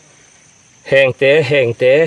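A man's voice speaking loudly from about a second in, over a faint, steady high-pitched whine.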